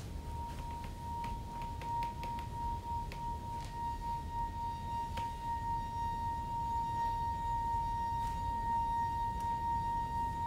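A single long, pure held note that does not waver, joined about four seconds in by a fainter note an octave above, with a few faint clicks early on.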